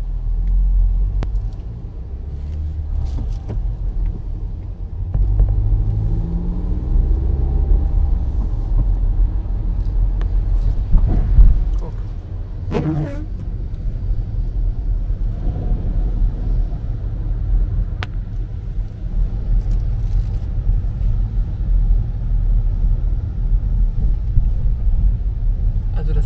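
Inside a moving car on a wet road: steady low engine and road rumble, with the engine's pitch rising as the car speeds up about five to eight seconds in, and a brief louder rush about eleven seconds in.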